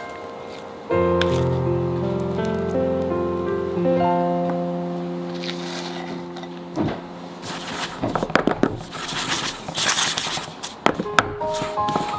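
Background music with sustained notes. About halfway through, a run of irregular knocks and scrapes sets in as thick cake batter is scraped into a paper-lined metal cake tin and the tin is handled on a wooden worktop.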